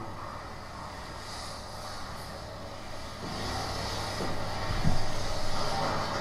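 Soundtrack of a projected video art piece heard through the room's speakers: a steady low rumble that swells about three seconds in, with one dull thump near five seconds.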